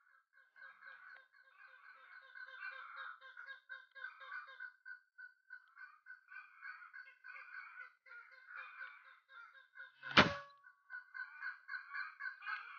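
Many short, repeated bird calls chattering throughout, followed about ten seconds in by a single sharp shot from a scoped air rifle, the loudest sound, which strikes the bird in the chest.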